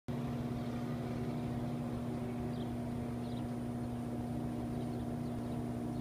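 Steady low machine hum with a constant pitched drone and no change in speed, with a few faint, short high chirps in the background.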